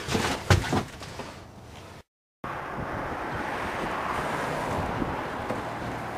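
A couple of sharp knocks in the first second, then a brief dead-silent cut about two seconds in, after which wind rushes steadily on the microphone outdoors.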